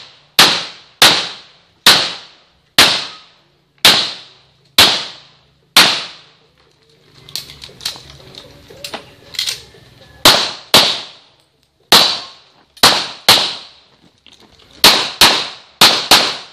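Handgun shots fired one at a time in a practical-shooting course of fire, each a sharp crack with a short ringing tail: about seven shots roughly a second apart, a pause of about four seconds, then more shots, some in quick pairs.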